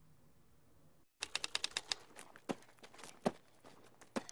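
Typewriter keys clacking: a fast run of about ten strokes, then slower, uneven strokes.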